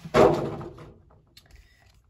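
A short, breathy laugh blown close to the microphone: one burst of noise that fades away within about a second.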